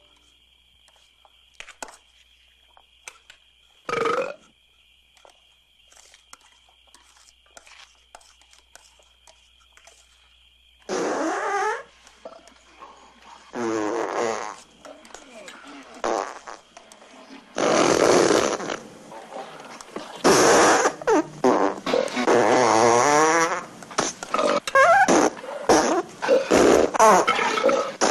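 Loud, drawn-out farts, some with a wobbling pitch. They start about eleven seconds in, after a quiet stretch with small clicks, and come more and more often and overlap from about seventeen seconds on.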